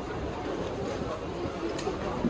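Busy street-market ambience: indistinct crowd chatter with a low, steady rumble of a small car moving slowly through the crowd.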